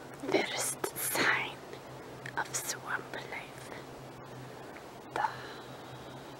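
A person's soft whispering, breathy and without clear words, strongest in the first second and a half with a few fainter bursts later, over a faint steady low hum.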